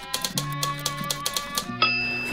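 Typewriter keys clacking in quick, irregular strokes over background music. Near the end a harder strike is followed by a long, bell-like ring.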